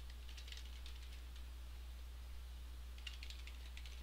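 Faint typing on a computer keyboard: a quick run of keystrokes in the first second and a half, then another run about three seconds in, over a low steady hum.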